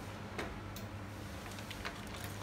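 ETON Q7 automatic cup-sealing machine humming steadily, with a few light clicks, two of them close together near the end.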